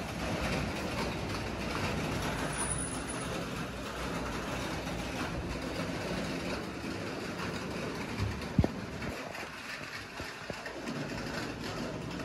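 Steady background rumble and hum, with one sharp knock about eight and a half seconds in.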